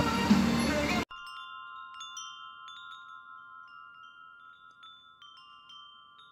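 Background music cuts off about a second in. A wind chime then rings: a series of light strikes over a steady ring that slowly fades.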